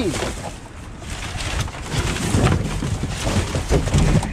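Cardboard boxes and plastic bags being handled and shifted in a dumpster: irregular rustling and crinkling with scattered knocks of cardboard, over a low rumble.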